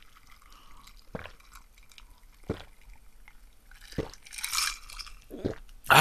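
A person gulping cola from a glass mug: four swallows, roughly one every second and a half.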